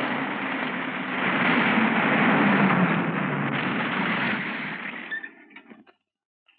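Jeep engine running: a steady rumble with hiss that swells in the middle, then dies away about five seconds in.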